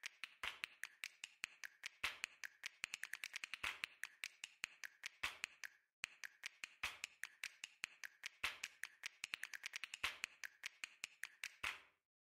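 Faint, rapid computer mouse clicking and scroll-wheel ticks, coming in quick irregular runs with a short pause about halfway through.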